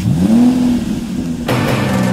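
A car engine revs up, its pitch rising and then holding. About a second and a half in, music with drums comes in over it.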